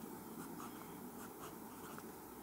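Pen scratching on paper in a series of short, faint strokes, drawing a hexagonal ring.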